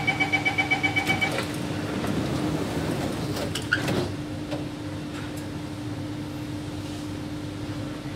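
Metro train door-closing warning: a rapid string of beeps lasting about a second and a half. A knock follows just under four seconds in as the doors shut, then the train's steady hum.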